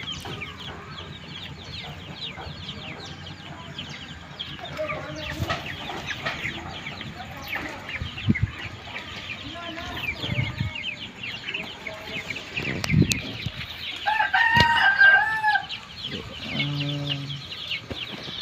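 A flock of chicks peeping continuously, many short high chirps overlapping, with some clucking from caged chickens. About fourteen seconds in, a rooster crows once, briefly.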